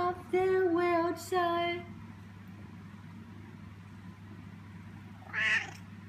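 Domestic cat meowing in a quick run of short, steady-pitched notes over the first two seconds, then one more short, higher cry near the end.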